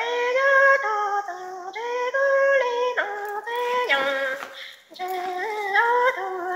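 A woman singing kwv txhiaj, Hmong sung poetry, solo and unaccompanied. She holds long notes that step and slide between pitches, with a short pause for breath about three-quarters of the way through.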